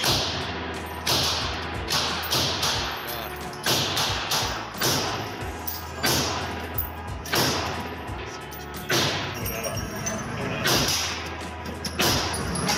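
Semi-automatic AR-style rifle fired in a slow string of about ten shots, roughly one a second. Each shot is a sharp report followed by echo off the walls of an indoor range.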